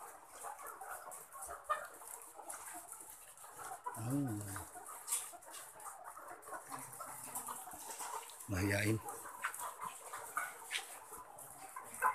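A caged flock of young white laying hens (ready-to-lay pullets) clucking and chattering, with many short scattered clicks and chirps. Two brief low voice sounds stand out, about four seconds in and near nine seconds.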